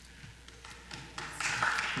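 Congregation applauding, starting a little over a second in and quickly building to a steady patter of many hands clapping.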